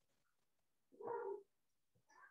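A single short, pitched animal-like cry about a second in, lasting half a second.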